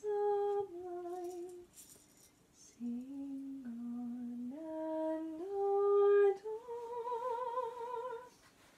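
A woman humming a slow lullaby melody a cappella, with a short pause about two seconds in. She holds each note and steps between pitches, and the last note is long with a wavering vibrato.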